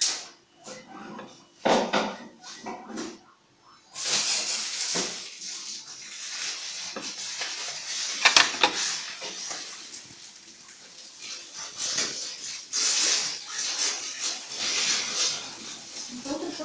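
A thin plastic tube knocking against the side of a plastic jug of water several times. About four seconds in, an uneven hissing noise with several surges takes over.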